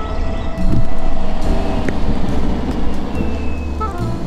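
Electric skateboard rolling over asphalt, with a steady low rumble of road and wind noise that grows louder about half a second in. Faint background music plays underneath.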